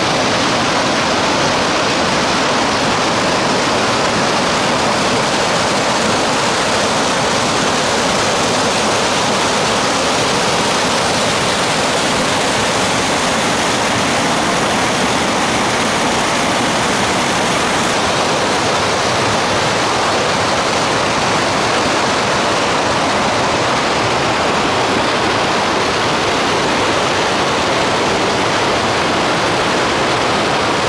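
A mountain stream's falls cascading over boulders: a loud, steady rush of water that never lets up.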